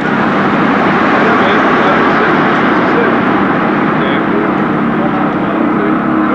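Loud, steady noise of a motor vehicle running close by, holding an even level throughout.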